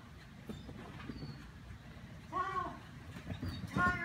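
Running footfalls of a handler and dog on artificial turf during an agility run: a string of soft, irregular thumps. The handler's short shouted commands come twice, about two and a half seconds in and again near the end.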